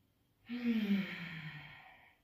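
A woman's audible sigh on the out-breath, starting about half a second in, breathy and falling steadily in pitch before fading away.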